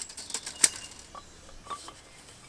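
A few light clicks and knocks from handling tools: metal sieve bowls set down in a wooden frame and a wooden hand crusher picked up, the sharpest knock about two-thirds of a second in.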